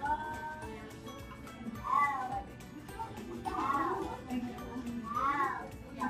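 Three short animal calls, each rising and then falling in pitch, about a second and a half apart, over background music.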